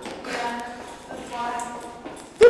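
Footsteps going down concrete stairs in a stairwell, with two short bursts of faint voice.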